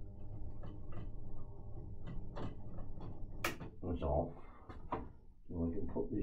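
Reel-to-reel tape recorder switched on, humming steadily, while its controls and mechanism are handled with several clicks and knocks; the sharpest click comes about three and a half seconds in.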